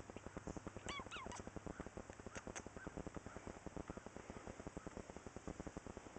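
A domestic cat close to the microphone gives two short chirping meows about a second in and a brief higher call a little later, over a steady, rapidly pulsing low rumble.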